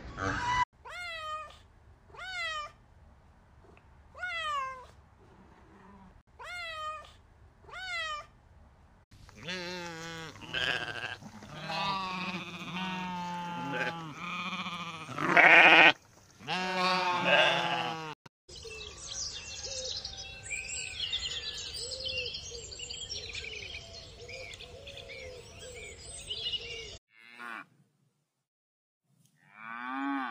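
Farm animals calling. A run of short calls that fall in pitch comes about once a second, then a dense stretch of overlapping goat and sheep bleats, then scattered calls over a steady noisy background. The sound stops about three seconds before the end.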